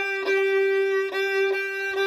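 Violin bowed on one repeated note, the same pitch sounded in about four separate bow strokes with short breaks between them.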